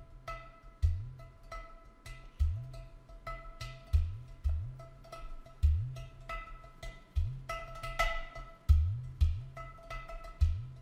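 A clay pot drum played with the hands in a loose rhythm: deep, booming bass strokes whose pitch bends, with slaps and lighter, higher ringing notes between and on top of them.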